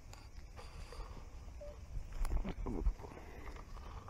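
Knocks and scuffs of a red plastic bucket holding water as it is handled and lowered to the shallow water's edge to release small fish, loudest between about two and three seconds in. A low wind rumble on the microphone runs underneath.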